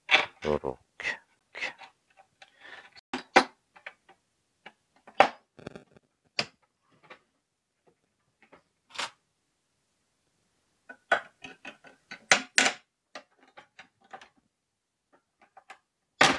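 Hard plastic parts of a Meiho VS-7055N tackle box clicking and knocking as a side rail and a rod holder are handled and pressed into place. The short clicks come in scattered clusters, with a quieter stretch in the middle.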